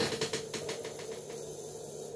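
Metal link watch band clicking and rattling lightly as the watch is turned over in the hand, a quick run of small clicks that fades out after about a second, over a faint steady hum.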